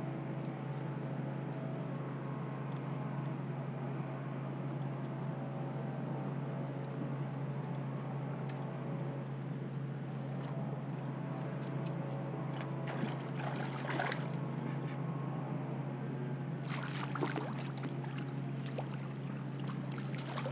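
A boat's motor running with a steady low hum, while a hooked hybrid striped bass splashes at the surface beside the boat in short spells during the second half, most around three-quarters of the way through.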